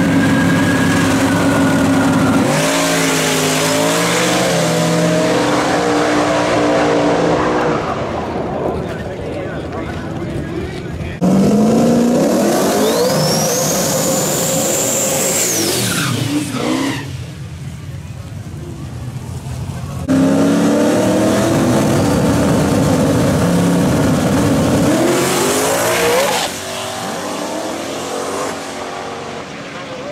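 Drag-race car engines running loud at the strip: an engine revving on the start line, then a burnout with spinning tyres and a high rising whine, then another burst of hard revving that drops away near the end.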